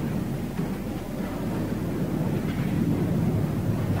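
Steady background noise, an even hiss with a low hum beneath it, with no distinct event standing out.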